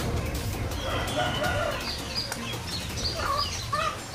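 A rooster crowing and chickens clucking, with small birds chirping.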